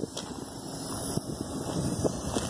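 Outdoor ambience: wind on the microphone, with a low rumble underneath.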